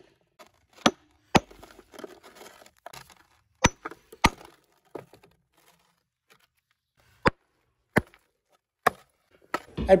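A hammer striking and splitting lumps of limestone on a wooden board, about seven sharp irregular blows with gritty crumbling and scraping between the first few: the stone is being broken into small pieces for burning into lime.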